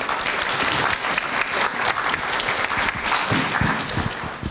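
Audience applauding a speaker at the end of a talk.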